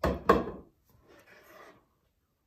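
Two sharp wooden knocks close together as a squeegee is handled in its wooden rack, then a softer scraping of a spatula stirring plastisol ink in its tub.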